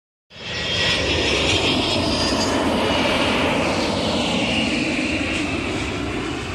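Jet airliner engines running, a loud steady rushing roar that starts suddenly just after the beginning and fades away near the end.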